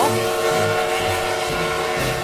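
A steam-locomotive whistle: one long, steady blast that cuts off near the end.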